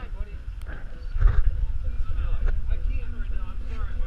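Indistinct voices of people talking in the background over a heavy, uneven low rumble, with a louder burst about a second in.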